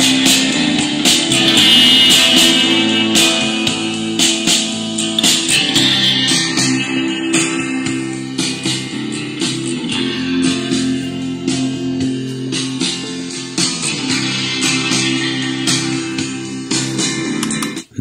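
Guitar music with a lot of bass, played from a TF memory card through the Prunus J-160 retro radio's speaker. The music cuts out briefly at the very end as the player skips to the next song.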